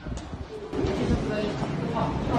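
People talking, getting louder about half a second in.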